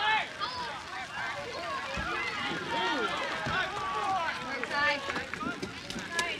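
Several voices of players and spectators shouting and calling out over one another during a soccer match, with one dull low thump about two seconds in.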